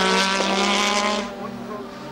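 A Formula One car's turbocharged V6 engine holding a steady high note, with a hiss of spray off the wet track. The sound fades about halfway through.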